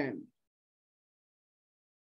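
The last syllable of a man's spoken word, then dead silence.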